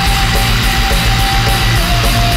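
Recorded metalcore / post-hardcore band music: dense distorted guitars over fast, driving drums, with one long held note running over the top.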